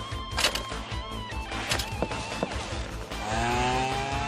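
Background music with a few short knocks, then about three seconds in a small scooter engine starts to rev and pulls away, its pitch rising steadily. It is the animated sound for a Honda Motocompo folding scooter setting off.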